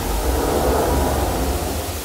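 A loud static-like hiss over a deep rumble, the noise sound effect of an animated logo sting.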